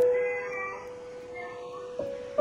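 Instrumental karaoke backing track: a keyboard note struck right at the start and left to ring, fading slowly, with a few faint higher notes over it.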